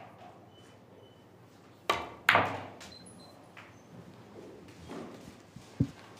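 Pool cue tip striking the cue ball, then about half a second later a louder clack of the cue ball hitting an object ball, which rings on briefly. A dull thud follows near the end.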